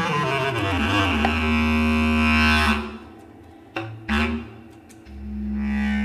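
Bass clarinet played solo in its low register: a note glides down in pitch into a long low held tone, which fades out. After a lull broken by two short sharp attacks, another low sustained note enters near the end.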